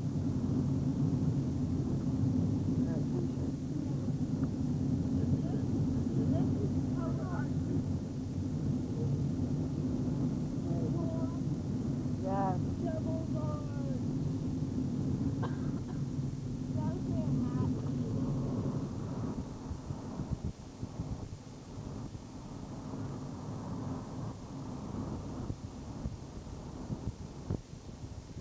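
Steady low drone of a moving RV motorhome heard from inside the cabin, its engine and road noise, with faint voices talking now and then. The drone drops in level about two-thirds of the way through.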